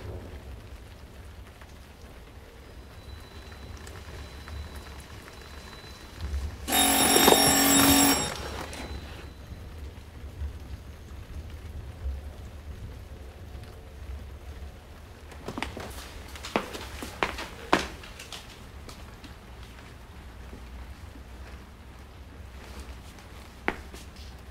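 A telephone bell rings once, a single ring of about a second and a half about seven seconds in, then stops. A few short knocks follow several seconds later.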